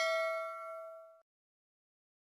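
Bell-like 'ding' notification sound effect of a subscribe-button animation, a single struck tone with several clear ringing tones that fades and stops a little over a second in.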